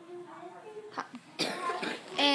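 Faint, quiet speech, then a click about a second in and a short, harsh noisy burst near the end.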